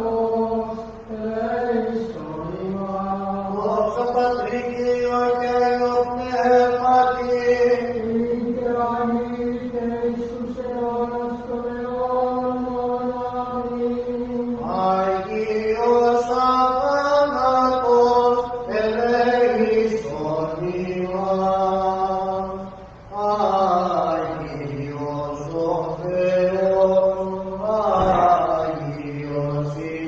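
A male voice chanting Orthodox liturgical chant: a slow line of long held notes with ornamented turns, with a short breath pause about two-thirds of the way through.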